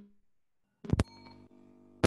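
A sharp pop about a second in, then a faint steady electrical hum with several overtones, heard over a video-call audio line.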